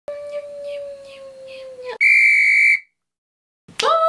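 Two whistle-like tones: a steady, medium-pitched one held for about two seconds that dips as it ends, then a much louder, higher one lasting under a second that cuts off into a short silence.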